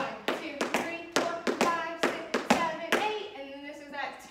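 Tap shoes striking the studio floor in a quick, uneven rhythm of about a dozen sharp taps as push steps are danced, with a woman's voice sounding the rhythm between them.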